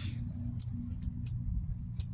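Steady low rumble of a car's cabin, with scattered light metallic clicks and jingles.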